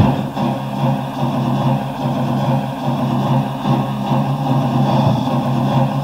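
Electronic dance music in a breakdown: the kick drum drops out as it begins and a sustained low synth drone holds, with no beat. It is played from a cassette-tape recording of a DJ set.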